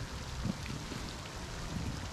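Steady splashing hiss of a pond fountain, with low wind rumble on the microphone and a few soft knocks from the inflatable's vinyl being handled.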